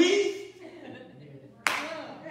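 A single sharp hand clap about a second and a half in, sudden and dying away quickly, in a small church hall.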